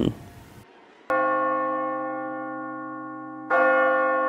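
A bell tolls twice as a dramatic sound effect. The first stroke sounds about a second in and rings on, slowly fading; the second strikes near the end and rings over the last half second.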